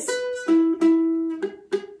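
Spruce-top pineapple tenor ukulele with an E chord fretted, its strings plucked one at a time so each note rings: a note at the start, two more that ring on, then a quicker run of plucks near the end. The strings are being tested to check that every note of the chord sounds clearly.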